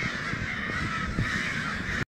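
A large flock of crows cawing continuously, many calls overlapping. The birds are agitated by a recorded crow distress call played at full volume, the typical mobbing response.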